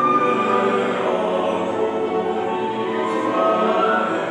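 Mixed choir singing, accompanied by piano, flute and cello.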